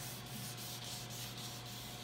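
Fine 800-grit sandpaper rubbed by hand back and forth over a wet, soapy varnished mahogany hull: a soft, steady scrubbing of wet sanding that takes the shine off the varnish between coats.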